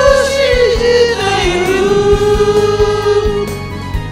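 Several voices singing together into karaoke microphones over a backing track with a steady beat. The voices hold one long note through the middle.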